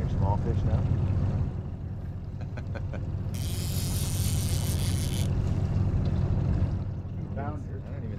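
Boat motor running steadily at low trolling speed, a low even hum. About three seconds in there is a hiss lasting about two seconds, and a few faint clicks come just before it.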